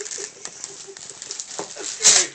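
Soft rustling of wrapping paper being handled, with a few faint clicks about a second and a half in.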